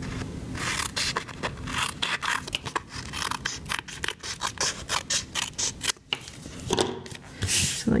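Small paper snips cutting through cardstock layered with designer paper: a quick run of crisp snips as the excess edges are trimmed off. A brief paper rustle comes near the end.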